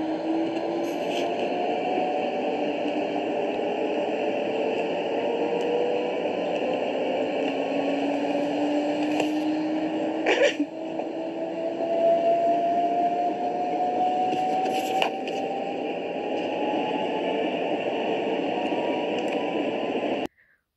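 Top-loading washing machine in its spin cycle, the drum speeding up: a whining tone climbs slowly in pitch over a steady rushing hum. There is a brief click and dip about halfway.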